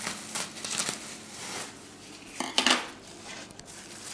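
Handling sounds of a plastic pack of lavash flatbread: a few short rustles and clicks, with a louder metallic clatter about two and a half seconds in as the scissors are put down on the tabletop.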